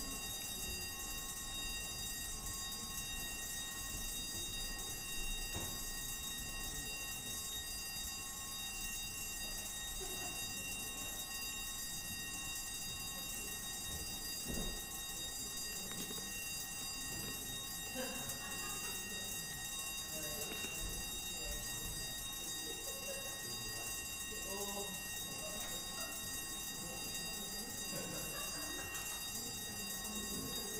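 Division bells ringing steadily, summoning councillors to vote in a division, under low chatter and movement of people in the chamber.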